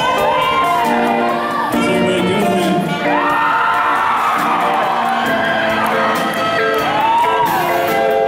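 Live band with a saxophone playing the lead melody over piano, drums and guitar, with an audience cheering and whooping over the music.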